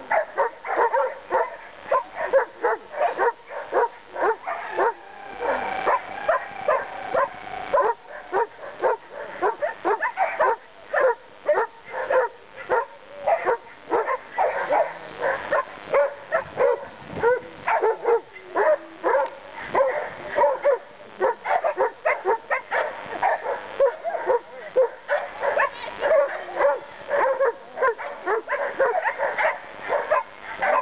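A dog barking rapidly and without a break, two to three short barks a second.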